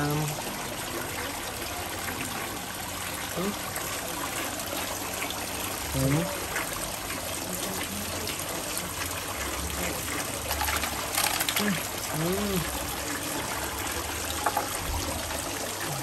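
Steady trickle of running water in a shallow freshwater crayfish pond, with a short cluster of splashes about two-thirds of the way through as hands work in the water.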